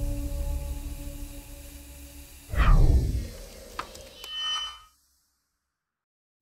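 Sound effects for an animated logo intro: sustained tones fading away, then a loud falling swoosh with a deep boom about two and a half seconds in, followed by a couple of sharp clicks and a short shimmer before the sound cuts to silence for the last second.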